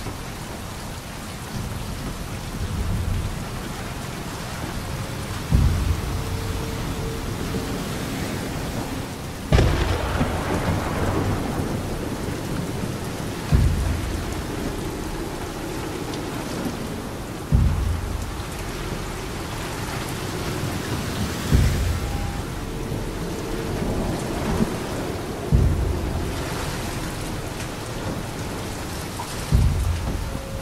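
Slow, deep drum strikes about every four seconds over a steady wash of rain sound, with faint held tones in the background: the ambient, thunder-like opening of a Norse-style music track.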